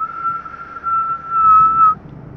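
One long whistled note held at a steady high pitch for nearly two seconds, sliding up into it at the start and cutting off sharply at the end, over the low hum of a car on the road.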